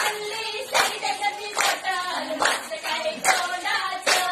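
A group of voices singing together with hand claps keeping time, a clap about every 0.8 seconds.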